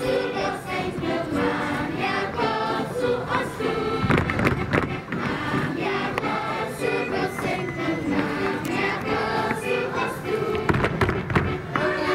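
A group of children singing a folk song together in chorus with musical accompaniment, with a few thuds of dancers' steps on the wooden stage about four seconds in and near the end.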